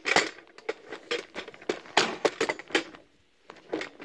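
Irregular metal clicks and knocks, about a dozen in the first three seconds and one more near the end. This is hand adjustment of the tooling and depth stop on a valve seat and guide machine, with no cutting under way.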